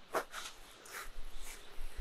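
A few brief, soft rustling and handling noises as a wet rabbit hide is picked up and moved in the hands.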